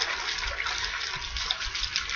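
Water sloshing inside a plastic drink bottle as it is shaken by hand to mix the flavour in, a steady rushing with a few small knocks.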